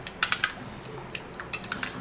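A metal spoon stirring a runny clay face-mask mixture in a glass bowl, clinking against the glass in a scatter of sharp taps. There is a quick cluster of taps shortly after the start and another run near the end.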